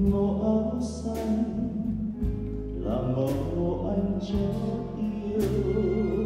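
Live chamber string orchestra with drum kit and keyboard playing a Vietnamese song with a male singer, with a bright stroke from the drum kit about every two seconds.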